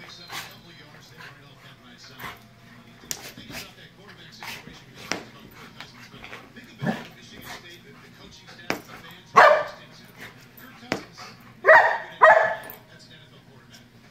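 Golden retriever play-barking: one loud short bark about two-thirds of the way through, then two more in quick succession near the end, with light scattered knocks and scuffles as it plays on the carpet.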